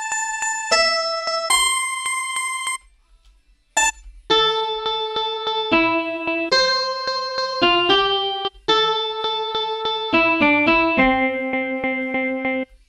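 Acoustic guitar sample played through Ableton's Simpler sampler as a melody of held notes, each note sustained at an even level without dying away, with a pause of about a second partway through. A fast, even clicking runs through each held note as the looped section of the sample restarts.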